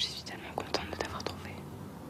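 A person whispering up close, a breathy voice with no pitch and a few small clicks, fading out after about a second and a half.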